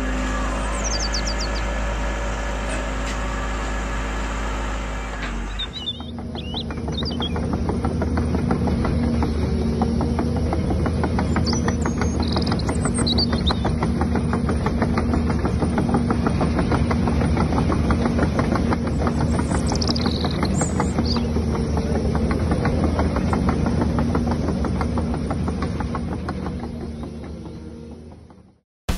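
Huina RC excavator running: a steady motor whine for the first few seconds, then a dense, fast rattle of its crawler tracks as it drives, fading out near the end. Birds chirp briefly a couple of times.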